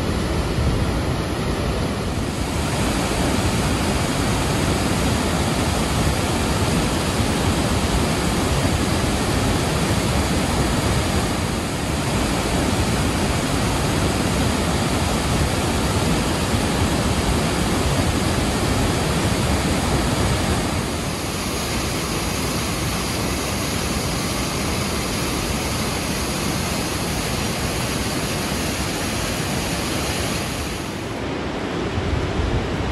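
Loud, steady rush of a large waterfall, a great volume of glacial river water pouring over rock ledges into a canyon. The roar changes character abruptly a few times and is a little quieter in the last third.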